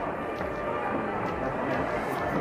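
Shop room tone: indistinct background voices with faint music playing.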